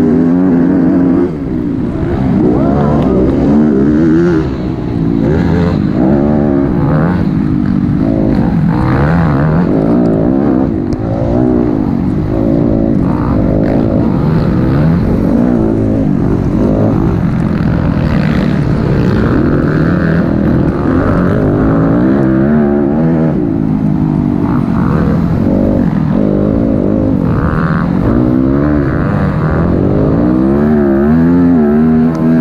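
Dirt bike engine revving hard throughout, its pitch rising and falling constantly with throttle and gear changes, heard from a camera mounted on the bike.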